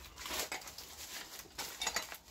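Brown paper packaging rustling and crinkling as a parcel is opened and a paper-wrapped part is pulled out, in a few irregular bursts, the loudest near the end.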